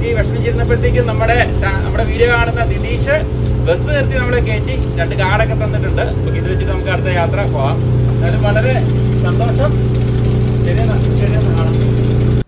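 Bus engine idling steadily, heard from inside the bus cabin beside the driver's seat.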